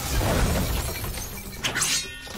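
Action-film crash effect: a wooden handcart smashed apart, with splintering and falling debris, loudest in the first half-second. A short, sharp high noise comes near the end.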